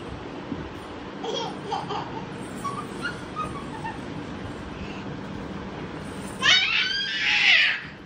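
A young child laughing loudly for about a second and a half near the end, after a few faint, short vocal sounds.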